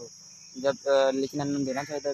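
Steady, high-pitched drone of a chorus of singing insects, with a young man's voice talking over it from about half a second in.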